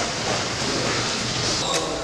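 Indistinct gym ambience: background voices and training noise, with a single sharp knock near the end.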